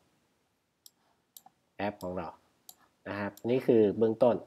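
A few sharp single clicks of a computer mouse, spaced irregularly, with a man's voice talking between and after them.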